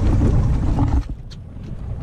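A steady low rumble from a small open boat at sea cuts down sharply about a second in. Quieter hiss and a few faint clicks follow.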